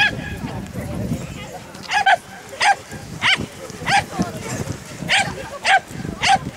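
A dog barking repeatedly: about six short barks starting about two seconds in, roughly one every half second with a brief pause in the middle.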